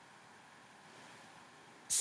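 Near silence: faint room hiss. Just before the end, a commercial's music with singing starts abruptly and loudly.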